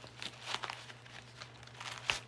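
Fabric rustling and scraping of a Blue Force Gear Micro Trauma Kit pouch being worked onto a padded war belt, in a few short bursts, the largest about half a second in.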